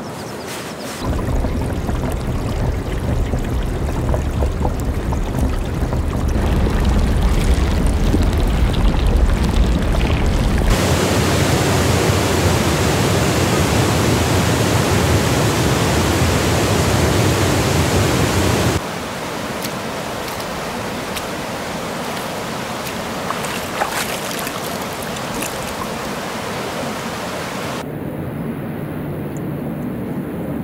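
Meltwater from the Morteratsch Glacier rushing, in edited sections. First comes a deep rumbling rush. From about eleven seconds in there is a louder, fuller rush of a whitewater torrent, which cuts at about nineteen seconds to a quieter rush with scattered clicks.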